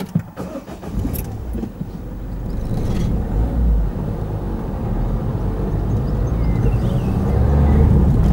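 A car moving off from a standstill, heard from the car itself. A few knocks come right at the start, then engine and road noise build steadily as it gathers speed.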